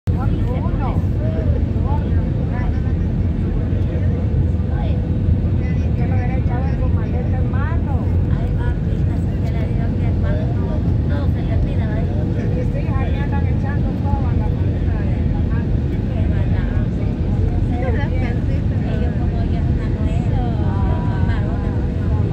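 Airliner cabin noise while descending: a loud, steady low rumble of jet engines and airflow with a faint steady hum running through it. People talk in the background.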